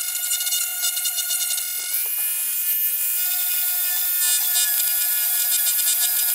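Dremel rotary tool running with a high-pitched whine as its bit bores out plastic rivets in an instrument cluster housing. The pitch steps up slightly about two seconds in.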